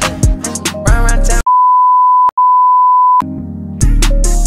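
Hip hop track with a steady 1 kHz censor bleep that blanks out the music for nearly two seconds in the middle, broken once by a brief click. The music comes back quietly just after and is at full level again near the end.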